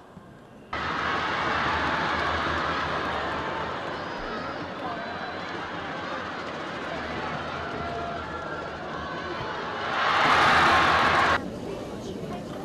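Football stadium crowd cheering, a dense mass of many voices that comes in suddenly about a second in. It swells louder near the end, then cuts off abruptly.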